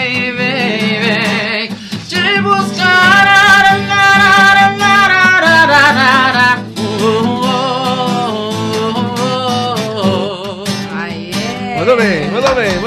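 A male singer accompanied by his own acoustic guitar performing a sertanejo song live, holding long notes with vibrato at the end of the chorus lines.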